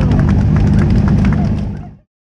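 A small crowd clapping and calling out over a steady low rumble, fading out to silence near the end.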